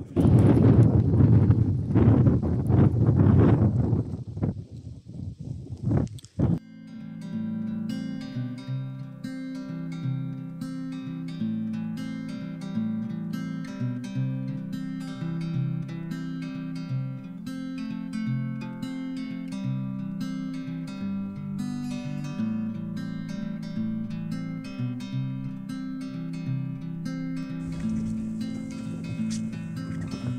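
Loud wind rushing on the microphone for about six seconds, which cuts off suddenly. Acoustic guitar background music with plucked notes follows and runs on steadily.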